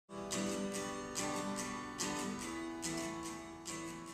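Acoustic guitar strummed solo in a steady rhythm, about two strums a second, the chords ringing between strokes.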